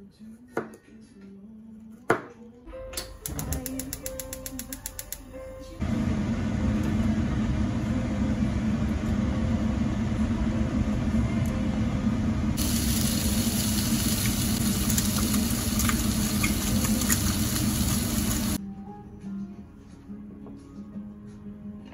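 Sliced raw pork belly sizzling loudly in a frying pan, a steady hiss that turns brighter about halfway through and stops abruptly a little before the end. Before it come a few sharp knife taps on a cutting board and a short run of rapid, even clicking.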